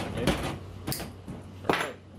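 Short sharp clicks and knocks as a nylon zip tie is snipped with cutters and the plastic egg crate rack is handled, the sharpest crack near the end. A steady low hum runs underneath.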